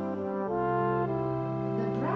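Brass music: held brass chords that shift to new notes about half a second in and again around a second in.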